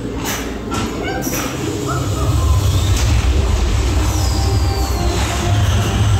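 Dark-ride soundtrack over loudspeakers: music with sound effects, a few whooshes in the first second and a half, then a deep rumble that swells from about two seconds in, with a falling glide near the end.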